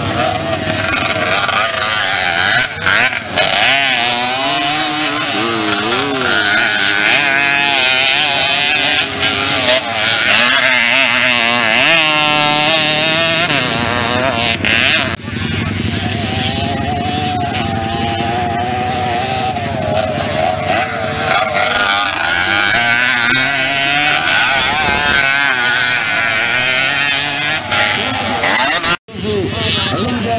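Race-modified Jawa Pionier 50 cc two-stroke mopeds revving hard on a dirt cross track, several engine notes rising and falling as the riders accelerate and ease off. The sound drops out briefly twice.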